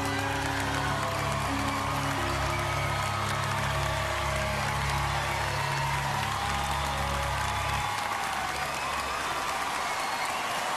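A studio audience applauding and cheering over the closing held chords of a live ballad's backing band. The music stops about eight seconds in, leaving the applause.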